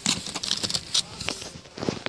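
Plastic clamshell packs of wax melts clicking and rustling against each other as hands rummage through a store bin, in a quick irregular series of light clacks.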